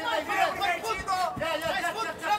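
Speech only: indistinct men's voices talking.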